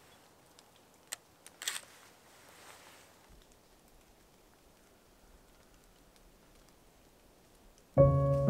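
Quiet background with a sharp click about a second in and a short clatter of clicks just after, from hands working a Pentax medium-format camera on its tripod.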